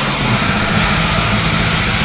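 Black metal recording: a dense, continuous wall of distorted guitars over fast, rapid-fire drumming.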